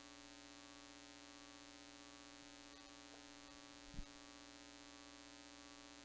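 Near silence with a steady electrical hum, and one faint low thump about four seconds in.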